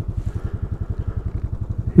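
Royal Enfield Classic 500's single-cylinder engine idling at a standstill: a steady, even low thump of roughly ten beats a second.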